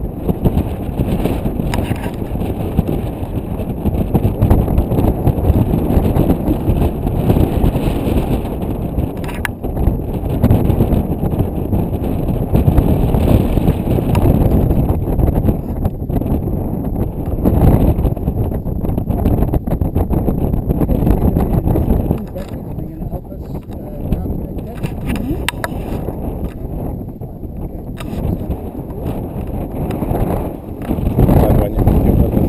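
Wind buffeting an action camera's microphone: a loud, gusting low rumble that rises and falls throughout.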